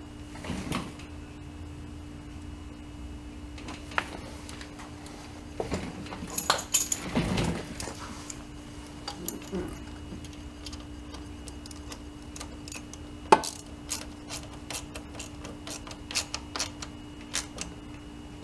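Small metallic clicks and clinks of a socket ratchet and hand tools being worked on the distributor clamp of a VW air-cooled engine, irregular and scattered, with one sharper click past the middle.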